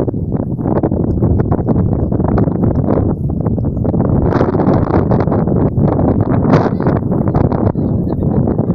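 Strong wind buffeting the microphone: a loud, rough rumble with rapid, irregular thumps throughout.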